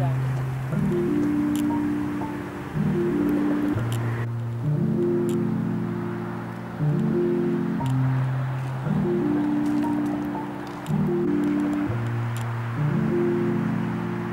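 Background music: soft sustained chords that change about every two seconds, each one starting a little louder and fading.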